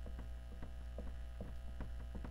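Steady electrical mains hum, with a few faint ticks from a marker writing on a whiteboard.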